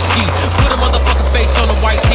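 Hip-hop track with rapped vocals over a steady deep bass that slides down in pitch about halfway through and again at the end, with skateboard wheels rolling on concrete beneath the music.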